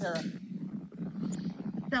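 A brief voice sound at the very start, then a low steady hum with faint room noise in the gap between speakers; a woman's voice starts right at the end.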